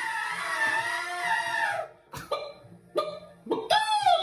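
Elephant trumpet impression: one drawn-out, wavering call lasting about two seconds that cuts off abruptly. It is followed by a few short sharp sounds, then a falling squawk near the end as a chicken impression begins.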